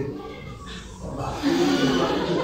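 A woman's voice making drawn-out vocal sounds without clear words, with a brief higher sound under a second in and a longer pitched stretch over the last half.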